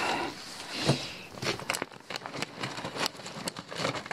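Rustling and crinkling of nylon tent bags and a woven plastic tarp bag as hands rummage through stored camping gear, with irregular crackles and scrapes.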